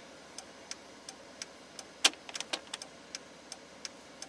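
Turn-signal flasher relay of a 1999 Dodge Ram 2500 van ticking, about three light clicks a second, with one louder click about two seconds in. The newly installed EF27 electronic flasher relay is working, so the dead blinkers are flashing again.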